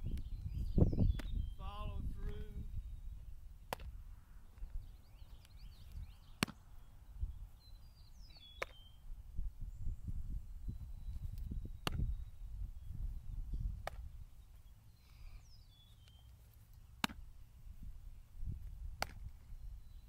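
Baseball smacking into leather gloves during a game of catch, a sharp pop every two to three seconds, over wind buffeting the microphone. Birds chirp now and then.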